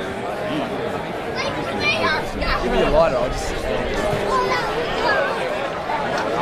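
Several voices shouting and calling over one another, the on-field calls of Australian rules footballers and spectators, with no clear words; the loudest calls come about halfway through.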